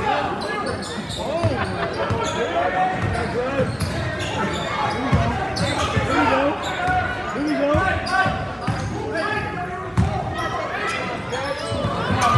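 Basketball dribbled repeatedly on a hardwood gym floor, the bounces echoing in a large hall, under the chatter and shouts of players and spectators.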